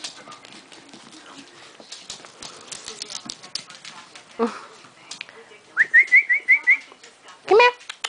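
Seven-week-old Shih Tzu puppies yapping at play: light clicks and scuffles, a short rising yelp about halfway, a quick run of about six high yips near six seconds, and a louder rising yelp near the end.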